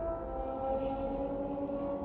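Ambient background music: slow sustained chords that change pitch in steps over a deep low rumble.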